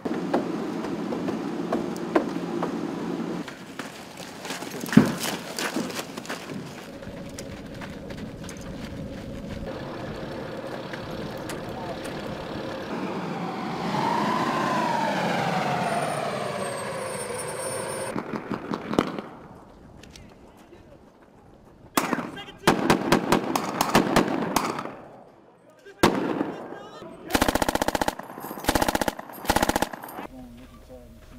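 Several short bursts of machine-gun fire in the last third, each a rapid string of shots. Earlier, a heavy military truck runs with an engine note that rises and falls.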